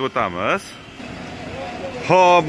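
A man says a short word, then about a second and a half of steady low motor-vehicle noise.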